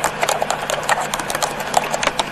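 Computer keyboard being typed on: quick, irregular key clicks, about seven or eight a second, as Japanese text is entered.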